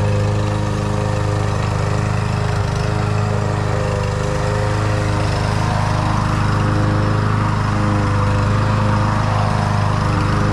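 Craftsman gas push mower running steadily under load as it cuts grass, its engine a constant hum. From about six seconds in, as it passes close, the hiss of cutting grass grows louder.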